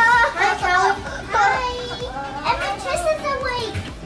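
A young child's high-pitched voice in three drawn-out cries that rise and fall, wordless or unclear, as children play.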